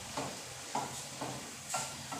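A wooden spatula stirring and scraping mixed vegetables in a metal kadhai, about two strokes a second, over a steady sizzle of frying in ghee. The vegetables are at the bhuna stage, still being fried until the ghee separates.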